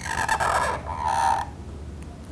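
A broad-nibbed calligraphy pen scratching across paper in two strokes, the first lasting most of a second and the second, shorter, starting about a second in, with a faint squeal in the scratch.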